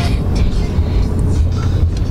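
Steady low rumble of road and engine noise inside a pickup truck's cabin while driving.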